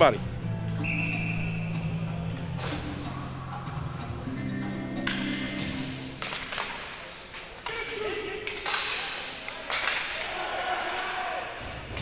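Ball hockey play: scattered sharp knocks of sticks and the plastic ball against the floor and boards, over music playing in the background.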